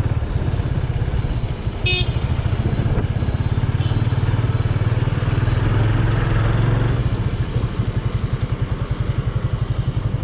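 Yamaha FZ25's single-cylinder engine running under way as the motorcycle is ridden, a steady pulsing note that grows louder about five to seven seconds in. A short high beep, like a horn, sounds about two seconds in.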